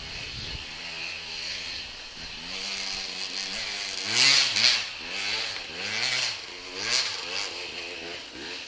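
Off-road motorcycle engine revving up and down over and over as the throttle is worked, with louder, sharper revs about four seconds in and again near the end.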